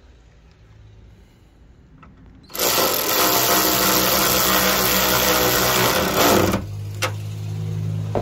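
Cordless electric ratchet running down a 10 mm bolt: a loud, steady motor whine that starts about two and a half seconds in, lasts about four seconds and cuts off suddenly. A lower steady hum with a couple of clicks follows.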